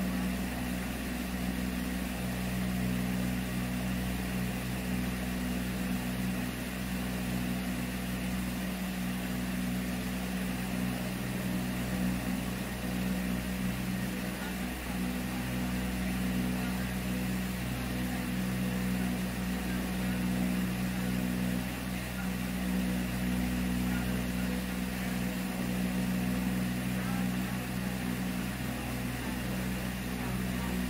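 A steady, unchanging low hum over a background hiss, with no distinct events.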